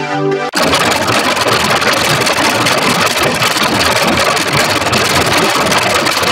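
MIDI-style synth music that, about half a second in, cuts abruptly to a loud, harsh, buzzing wash of distortion, the music crushed by an audio effect.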